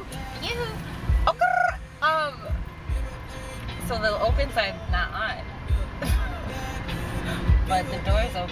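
A woman's voice making high, sing-song vocal noises in held notes and swooping glides, with music playing in the car underneath.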